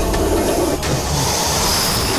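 Dramatic sound effect for a giant cobra's appearance: a loud, dense rushing noise, with a sharp hiss coming in about a second in.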